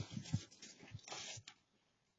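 A dog's short, low vocal sounds near the start, mixed with noisy ripping of a cardboard package being torn apart by an English Mastiff, with another burst of tearing about a second in.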